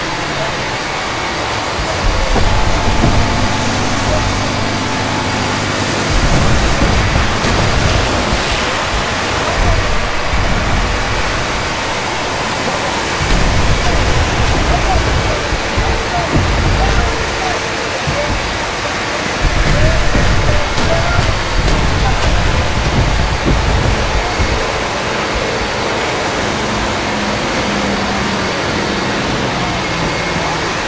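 Layered ambience aboard a WWII Higgins boat landing craft running in to the beach: a dense, steady wash of engine and sea-spray noise with men's voices mixed in. Deep rumbles swell up several times, about two, thirteen and twenty seconds in.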